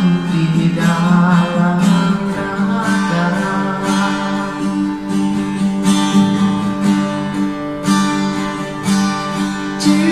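Nylon-string classical guitar strummed in a steady rhythm, chords ringing on between the strokes.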